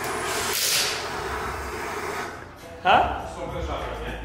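Handheld gas torch on a yellow cylinder hissing, loudest in the first second, with a steady low hum under it after that. A short vocal sound comes about three seconds in.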